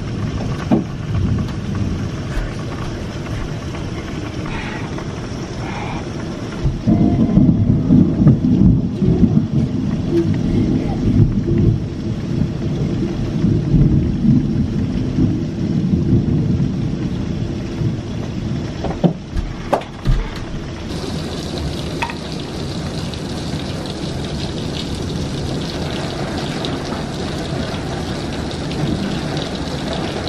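Thunderstorm: steady rain with rolling thunder, a long low rumble building about seven seconds in and dying away over some ten seconds. From about twenty seconds in the rain hiss sounds brighter.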